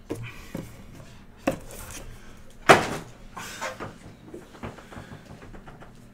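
Handling noises: a series of short knocks and clunks with some rustling between them, the loudest knock about two and a half seconds in.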